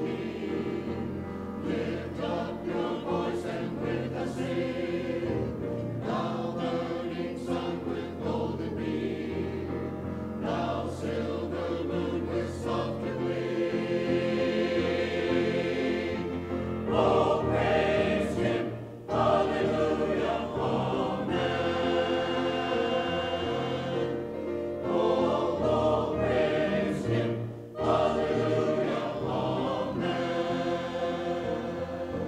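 Mixed church choir singing an anthem, with two short breaks between phrases, the first about two-thirds of the way through and the second near the end.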